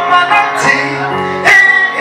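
Electronic arranger keyboard playing music: held notes and chords with sharp percussive hits, the loudest about a second and a half in.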